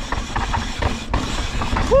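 Yeti SB150 mountain bike descending a dry dirt trail: a low rumble from the tyres and bike with irregular knocks and rattles over bumps, ending in a short 'woo' from the rider.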